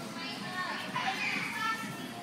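Many children's voices chattering and calling over one another in a large gym hall, a little louder in the second half.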